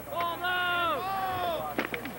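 Men's voices shouting during a lacrosse game: two long, drawn-out shouts that drop in pitch at their ends, then a single sharp crack near the end.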